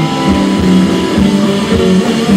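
Rock band playing: electric guitars holding sustained notes over a steady drum beat.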